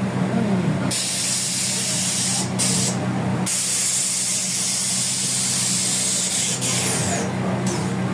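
Air-ride suspension of a customised Volkswagen Beetle venting air through its valves as the car lowers: a loud hiss starts about a second in, cuts out briefly twice, then carries on until near the end. A steady low hum runs underneath.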